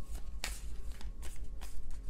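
Tarot deck being shuffled by hand: an irregular run of quick card clicks and flicks over a low steady hum.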